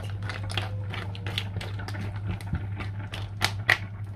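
Mussel shells clicking and clattering against each other and the pan as they are stirred in sauce with a spatula. The clicks come irregularly, with two louder clacks near the end, over a steady low hum.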